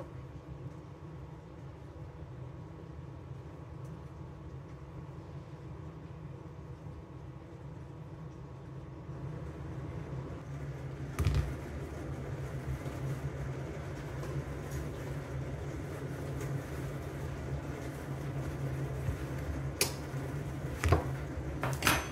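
Steady low hum of a kitchen appliance, with one sharp knock about halfway through and two or three light clicks near the end.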